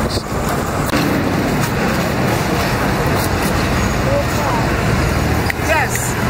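Steady road traffic noise, a continuous rumble of passing vehicles, with brief voices near the end.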